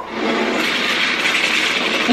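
A steady rushing noise in a movie trailer's soundtrack, starting suddenly as the picture cuts to black.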